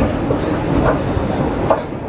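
Escalator running: a low mechanical rumble with irregular clattering and clicks.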